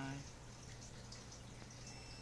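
Multimeter continuity beeper giving a thin, faint high tone that starts near the end, the sign that the two probed pins are connected by a trace. A faint steady low hum lies underneath.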